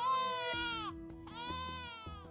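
An infant crying in two long wails, each dropping in pitch at its end, over background music with held notes.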